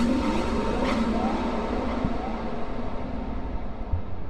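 Cinematic trailer sound design: a sharp impact hit at the start and a second one about a second in, over a dense low rumbling drone that slowly thins out.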